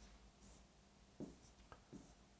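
Near silence: room tone with a few faint, brief sounds about a second in and near the end.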